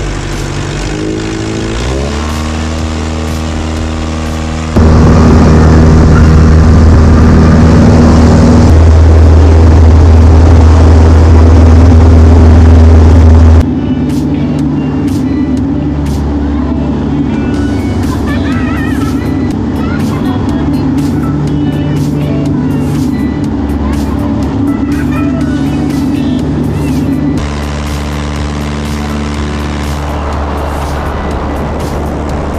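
Carbon Cub light aircraft's piston engine and propeller droning steadily, rising in pitch over the first couple of seconds as it is throttled up for takeoff. The loudness jumps abruptly a few times. Through a quieter middle stretch, children's laughs and shrieks ride over the engine.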